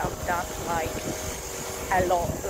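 A woman's voice speaking briefly over wind buffeting the phone's microphone, which makes a steady low rumble.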